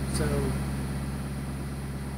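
Sailboat's auxiliary engine running steadily under way, a low even drone, with its newly re-pitched propeller back on.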